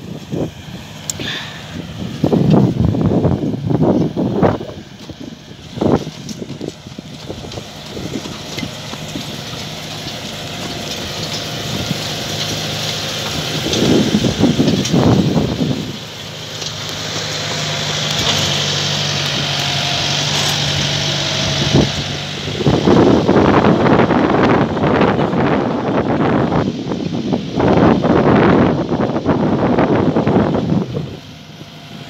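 Zetor Major CL 80 farm tractor's diesel engine running steadily under load, pulling a seed drill. It grows louder as the tractor comes close, with rough gusts of wind on the microphone at times.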